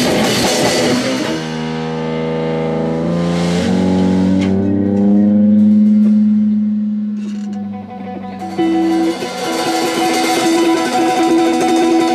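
Live rock band with electric guitars and drums. About a second in the drumming stops and long held guitar notes ring on. Near the end a picked electric guitar figure starts again and the full sound returns.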